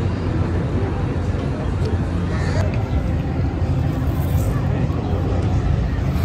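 Outdoor ambience: a steady low rumble with faint distant voices.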